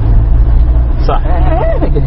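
A loud, steady low rumble with a brief indistinct voice in the middle of it, about a second in.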